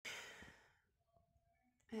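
A person's short breathy sigh that fades within about half a second, followed by near silence.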